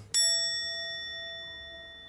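A single bell-like ding, struck once just after the start and ringing on as it slowly fades away.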